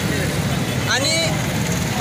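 A man speaking, with a pause of under a second before one short word, over steady low outdoor background noise.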